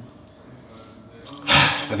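Quiet room tone, then about one and a half seconds in a man's short, sharp breath through the nose, and the first word of his speech.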